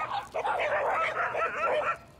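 Saluki barking rapidly and excitedly at other dogs, with a short break about a third of the way in. It is an anxious, reactive dog kicking off at the sight of other dogs.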